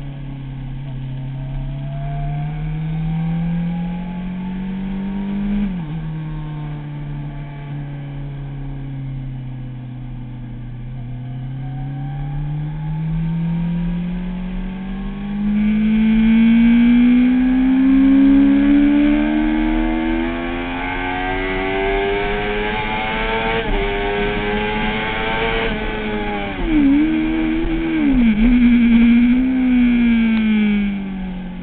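Kawasaki ZX-6R's inline-four engine heard from the bike itself on track: revs rise and drop sharply with an upshift about six seconds in, then climb long and hard to high revs with another brief shift dip. Near the end the revs fall in several quick steps as it shifts down. Wind rushes over the microphone while the bike is at speed.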